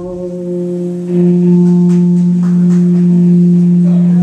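Amplified electric guitar holding one sustained droning note that swells louder about a second in, with a few faint higher notes over it.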